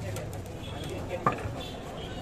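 Background voices and street noise, with one sharp tap a little past a second in.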